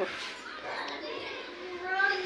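A laugh cuts off right at the start, then a young child's voice makes faint, soft vocal sounds, with a short rising sound near the end.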